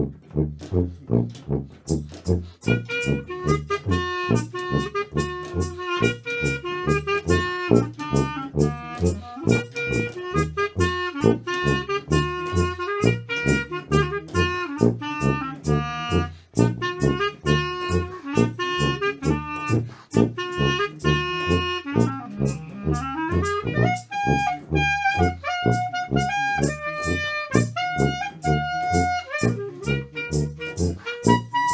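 Jazz played on brass: a low brass bass line pulses in a steady beat under a higher brass melody that comes in about three seconds in. Past two-thirds of the way, the melody slides upward and a new tune starts over the same steady bass pulse.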